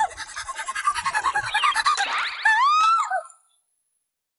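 A young anime girl's voice letting out a rapid string of short, high flustered cries, about five a second, then a longer high squeal that rises and falls, cut off abruptly near the end.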